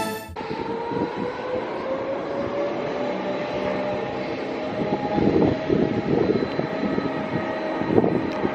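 Electric rack-railway train's motors whining with a slowly rising pitch as it gathers speed, under gusts of wind buffeting the microphone.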